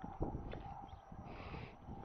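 Faint wind rumble and rolling road noise from riding along a road, with small knocks and short hissing puffs about once every second and a half.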